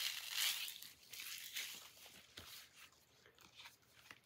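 Clear plastic shrink wrap crinkling and tearing as it is pulled off a factory-sealed Blu-ray case. It is loudest in the first second, then dies down to scattered light crackles and clicks.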